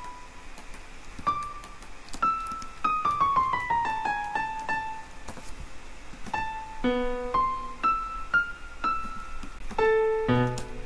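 MuseScore's playback sounds playing single high notes one at a time as notes are entered into the score, each note starting with a faint click. About three seconds in comes a quick stepwise run of falling notes, and near the end lower, fuller notes sound as well.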